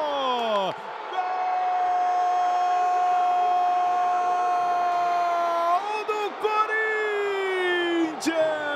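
A Portuguese-speaking TV commentator's long drawn-out goal cry ("goool"), one note held for about four and a half seconds, then dropping into a second, falling cry near the end.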